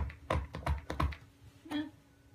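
A small dog's claws tapping and scratching on the floor of a soft-sided pet carrier as it turns around inside, a quick run of clicks, then one fuller, louder rustle near the end.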